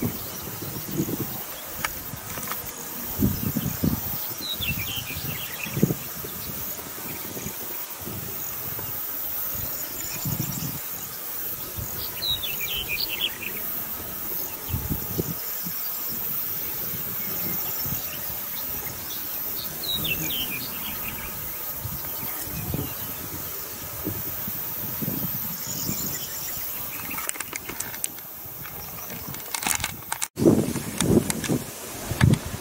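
Wind buffeting the microphone in irregular low gusts. A songbird sings a short descending run of chirps three times, several seconds apart.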